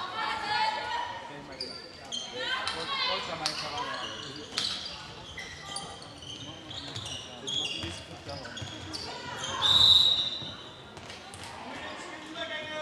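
Indoor handball game: a handball bouncing on the hall floor amid players' and spectators' shouts. The loudest moment comes about ten seconds in.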